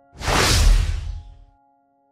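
Whoosh transition sound effect with a deep low rumble, coming in suddenly and dying away within about a second and a half, over a faint held piano chord.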